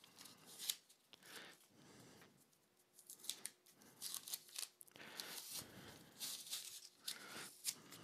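Blue tape being peeled and pulled by hand off a small jewelry box: faint, irregular crackling and ripping in short spurts.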